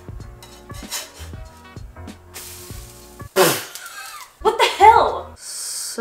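Pancake sizzling on a very hot griddle while a metal spatula scrapes and clicks under it, over faint background music. In the second half a voice makes a few loud, wordless exclamations.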